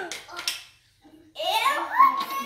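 A young child's excited voice: a short exclamation at the start, then a rising excited call about a second and a half in, with a couple of light knocks in between.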